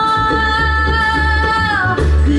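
Live acoustic string band of mandolin, fiddle and upright bass playing, with a woman's voice holding one long note that falls away near the end, over a steady bass line.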